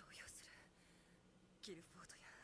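Near silence, with faint, soft speech: a breathy snatch at the start and a brief voiced sound near the end.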